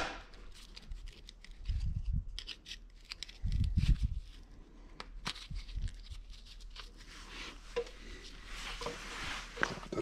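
Small metal clicks and scrapes as a screwdriver works the plug out of a female flat-face hydraulic coupler, with two dull handling thumps about two and four seconds in.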